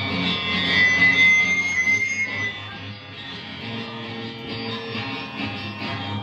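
Electric guitar and bass guitar playing live through amplifiers, getting quieter about halfway through.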